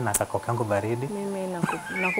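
Speech: a man's voice talking, then a higher voice holding a drawn-out sound on one pitch for about half a second, with a rising squeal-like sweep near the end.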